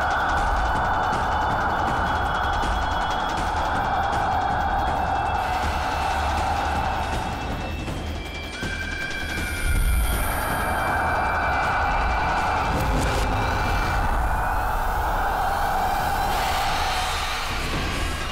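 Horror background score: sustained droning tones over a low rumble, dipping briefly about eight seconds in and coming back with a sudden hit about ten seconds in.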